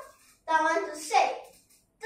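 A young girl's voice speaking, a short phrase of about a second.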